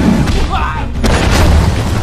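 Kung-fu film fight soundtrack: a deep booming hit sound over low rumbling score, with a short shouted yell about half a second in and a sharp whack about a second in, followed by a rush of noise.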